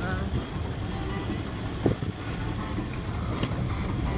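Four-cylinder vehicle engine and tyre rumble heard from inside the moving vehicle on a rough dirt road, a steady low drone. A single sharp knock sounds about two seconds in.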